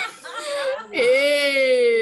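Women's voices laughing, then from about a second in a single woman's voice holding one long, drawn-out vocal sound that slowly falls in pitch, a mock laugh or wail of the kind used in laughter yoga.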